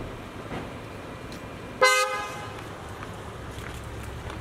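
A single short car horn toot about two seconds in, loud and sudden, over a steady background of street and vehicle noise.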